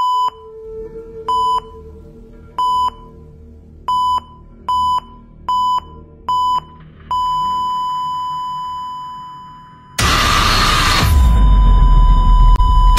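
Electronic beep tone: seven short beeps, the first four evenly spaced and the next three coming faster. It then runs into one long unbroken tone. About ten seconds in, a loud, deep noise with a low rumble comes in, and the held tone carries on under it until near the end.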